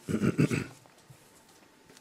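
A brief, rough non-speech vocal sound from the man at the microphone, under a second long, followed by quiet.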